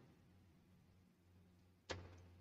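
Near silence with a faint steady low hum, broken near the end by one sharp click of a computer keyboard key being pressed.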